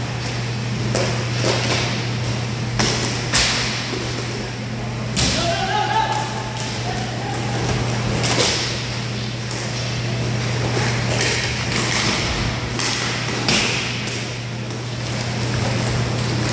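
Hockey play: repeated sharp clacks and knocks of sticks and puck, some off the boards, over a steady electrical hum. A player's call rings out about five seconds in.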